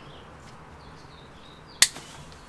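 One sharp, loud click near the end, with a brief ring after it, while hops are being picked off the bine; faint bird chirps sound behind it.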